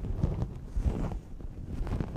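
A large piece of fabric rustling and flapping as it is lifted, shaken out and folded, in several brief swishes with a low rumble.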